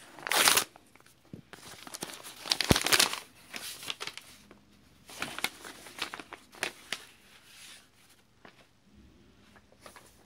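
Paper mail envelope being torn open by hand: two loud rips, about half a second in and about two and a half seconds in, followed by softer paper rustling and crinkling with small clicks that die away over the last few seconds.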